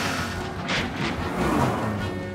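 Cartoon action music over a rushing vehicle sound effect, with a whoosh near the middle as the speeding train races past.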